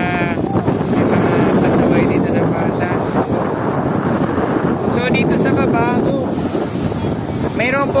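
Surf breaking and washing up a sandy shore in strong waves, a steady rushing wash, with wind buffeting the microphone.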